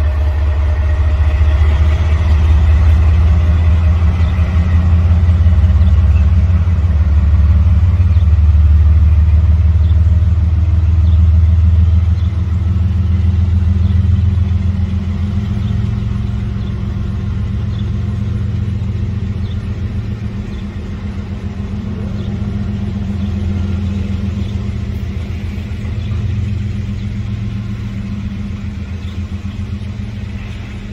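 Diesel locomotive engine running with a deep, steady rumble that eases down a little about twelve seconds in.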